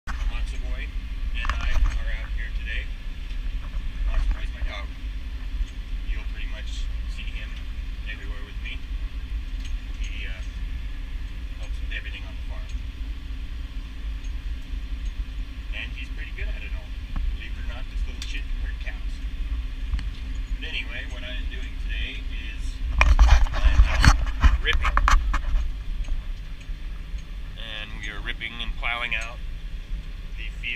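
Tractor engine running steadily under load, heard from inside the cab while it pulls a ripper through the field. A louder burst of rattling noise stands out about three-quarters of the way through.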